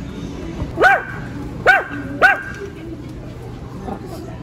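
A dog barking three times in quick succession, short sharp barks spaced under a second apart.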